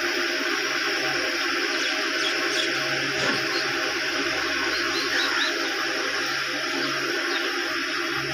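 Electric pedestal fan running: a steady rush of air with a faint even motor hum under it.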